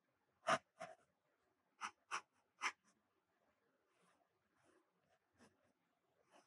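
Pencil strokes on sketchbook paper: five short, quick strokes in the first three seconds, then lighter, fainter ones.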